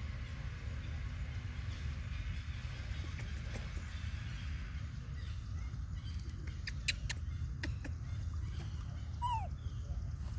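Steady low rumble under scattered sharp clicks and taps as young macaques handle a plastic cup, then near the end one short, falling squeak from a baby macaque.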